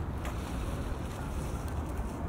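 Wind buffeting the microphone, a steady low rumble, with a few faint footsteps on stone paving.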